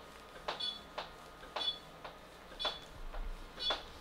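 Exilis radio-frequency skin-tightening handpiece in use, giving short high beeps about once a second with faint ticks between them.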